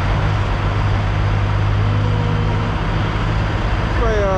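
Semi-truck diesel engine idling with a steady low hum, under an even rushing noise.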